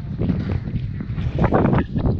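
Wind buffeting the camera microphone, a steady low rumble, with a few brief noisy bursts over it.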